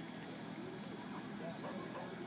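Faint, indistinct voices of people talking at a distance over open-air background noise, with no distinct sound event.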